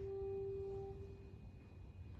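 Grand piano: a single held mid-range note with its overtones fading out about a second in, leaving a faint low hum of the hall.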